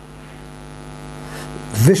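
A steady electrical hum, slowly growing louder, in a pause between words. A man's voice starts reading again near the end.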